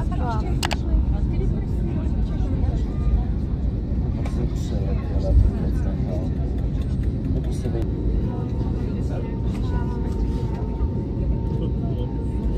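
Steady low rumble inside the cabin of an Airbus A321neo taxiing on the ground with its engines at idle, heard from a window seat, with faint voices in the cabin.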